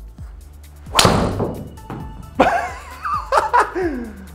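A golf driver striking a teed ball: one sharp crack about a second in, over background music.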